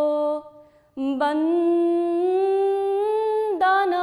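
A woman singing a naat solo with no accompaniment, in long held notes. A note fades out with a short breath-pause just before a second in, then a long note slowly rises in pitch and breaks off near the end.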